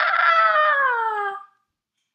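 A woman's voice acting out a long, drawn-out scream, 'Ahhhh!', falling steadily in pitch and dying away about one and a half seconds in.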